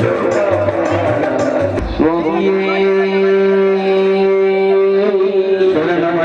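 Indian devotional music: singing over a regular drum beat, then a voice holds one long steady note from about two seconds in until just before the end.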